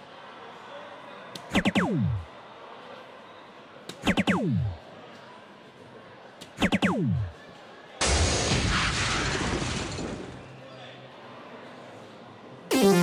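Electronic soft-tip dartboard machine's hit sound effects: three falling electronic swoops about two and a half seconds apart, one for each dart landing in the triple 20. About eight seconds in, a two-second crashing, noisy award effect marks the three triple 20s.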